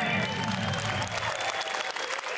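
Studio audience applauding at the end of a song, while the band's final note dies away about a second in.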